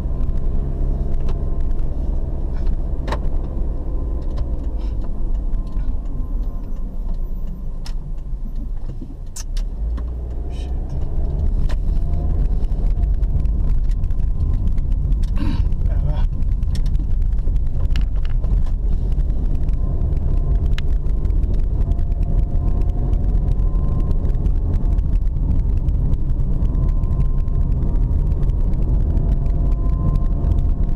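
Car engine and road rumble heard from inside the cabin while driving. The sound eases off around eight to ten seconds in, then grows louder, with the engine note slowly rising in pitch in the second half. A few sharp clicks sound over it.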